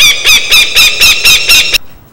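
A rapid series of loud, high-pitched squawks, about four a second, that stops abruptly near the end.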